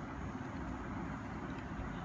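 Steady low background rumble with no distinct events, like distant traffic or a running machine.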